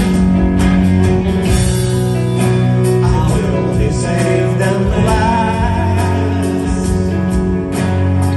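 Live band playing an instrumental passage: two electric guitars, a bass guitar and percussion.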